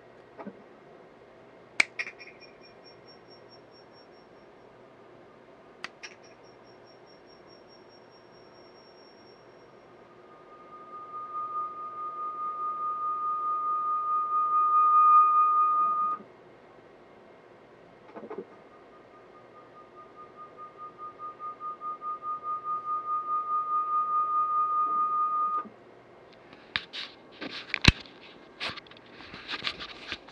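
Audio feedback through three FeenPhone VoIP instances looped on one computer: two clicks, each followed by a quick train of fading repeats, then twice a steady whistling tone that swells over several seconds and cuts off suddenly. Near the end, knocks and handling noise.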